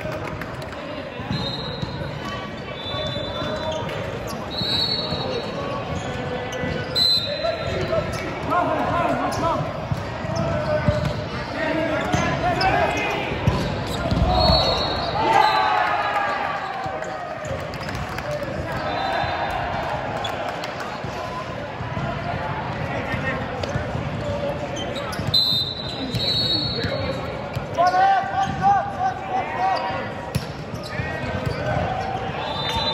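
Indoor volleyball play in a large gym: the ball being struck, shoes squeaking on the court floor, and players shouting and calling, echoing in the hall. The voices are loudest around the middle and again near the end.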